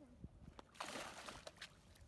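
A hooked bowfin thrashing at the water's surface, splashing, starting about a second in and lasting about a second.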